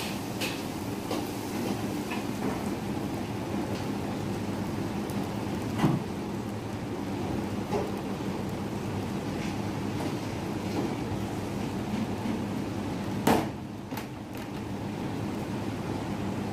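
Steady low kitchen hum with occasional knocks and clatters of roti canai dough and steel utensils on a steel worktop, the loudest about 6 and 13 seconds in.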